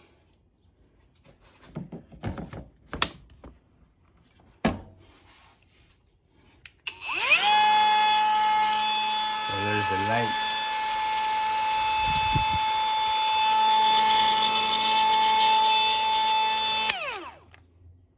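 Kobalt brushless cordless die grinder: a few clicks and knocks as the battery is fitted, then the motor spins up to a steady high whine for about ten seconds and winds down. It runs free with no bit in the collet.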